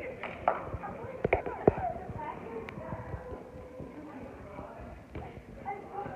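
A soccer ball kicked on artificial turf, a few sharp thumps in the first two seconds, over children's voices.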